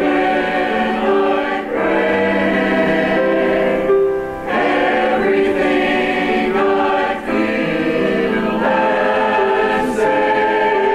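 Church choir of men and women singing in harmony, in held phrases with short breaks between them.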